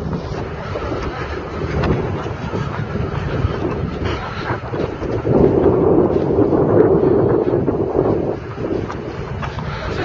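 Wind buffeting the camera microphone, a steady low rumble that swells into a stronger gust about five seconds in and eases off about three seconds later.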